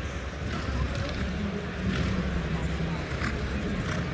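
Spectator crowd: a steady hubbub of many voices that swells slightly about two seconds in.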